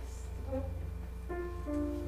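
A steady low hum, with a piano beginning to play soft held notes about a second and a half in.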